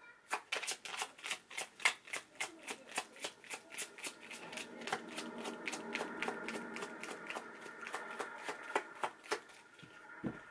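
A tarot deck being shuffled overhand, hand to hand: a steady run of card flicks, about three to four a second, stopping just before the end.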